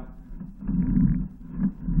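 Low, uneven rumbling thuds from a sewer inspection camera's push cable being fed in and pulled back, with several louder swells about half a second apart.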